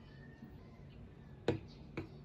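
Glass mug with a metal spoon in it set down on a resin coaster: two sharp clinks about half a second apart near the end.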